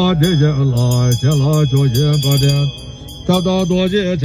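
A man chanting Tibetan sangsol prayers in a low, melodic recitation, pausing briefly about three seconds in before the next phrase.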